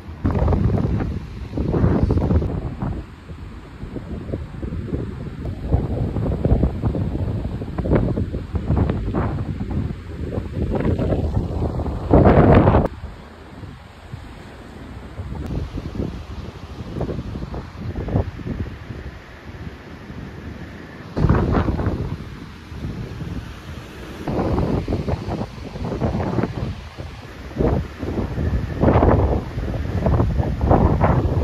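Gusty wind buffeting the microphone in uneven rushes, the loudest about twelve seconds in, over the wash of choppy lake water.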